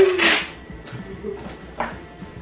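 A voice trails off at the start, then low background music with a brief scratchy noise near the end as a roll of duct tape is handled.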